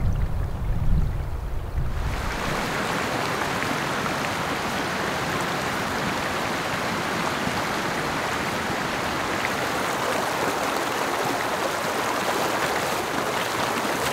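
Background music ending about two seconds in, then the steady rush of a small mountain creek's running water.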